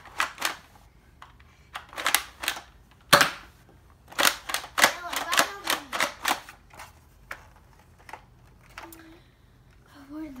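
Sharp plastic clacks and snaps of a foam dart blaster being worked and fired. The loudest single snap comes about three seconds in, followed by a quick run of about ten clacks over the next two seconds and a few scattered ones later.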